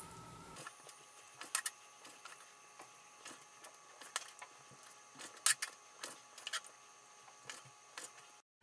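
Knife tapping on a plastic cutting board as raw chicken breast is cut into pieces: faint, irregular taps, a few a second at most, with a couple of louder ones, over a faint steady hum.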